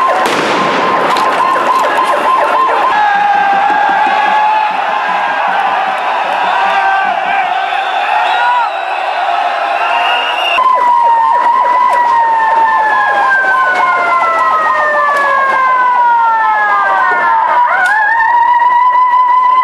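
Siren holding a steady wail, then from about halfway through slowly falling in pitch over several seconds before sweeping back up near the end, over a clatter of street noise.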